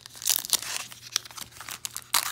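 A 2019 Topps Allen & Ginter retail trading-card pack being torn open by hand at its crimped seal, the wrapper crinkling and tearing in a run of irregular crackles, loudest in the first second.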